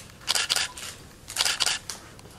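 Camera shutters clicking in two quick clusters of several shots each, about a second apart, as photos are taken.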